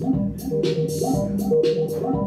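Modular synthesizer playing live electronic music: a repeating pitched low bass pattern with a steady tone above it, and short noisy percussive hits several times a second.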